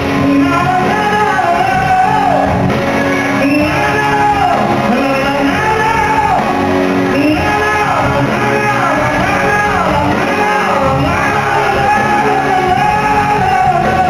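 A man singing a Greek pop song live into a handheld microphone with a band accompanying him, the melody rising and falling in long held phrases. The sound carries the echo of a large hall.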